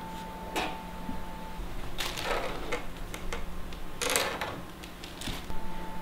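Plastic seedling cell packs being handled and set into a plastic tray: a few short scrapes and light knocks, over a faint steady hum.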